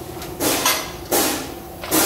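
Harsh, noisy strokes of work on metal, about one every three quarters of a second, over a steady low hum.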